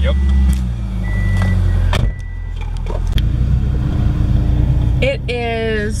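Car cabin drone of the engine and road while driving, a steady low rumble. Over it, a high electronic beep sounds three times about a second apart in the first couple of seconds.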